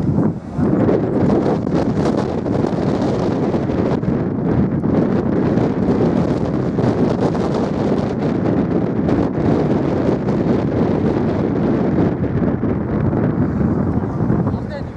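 Wind buffeting the camera microphone: a steady, loud noise weighted to the low end, with a brief dip just after the start.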